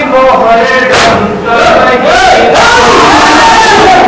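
A male voice reciting a noha over sharp, regular strokes of hands striking chests in matam, then from about two seconds in a crowd of men chanting loudly together.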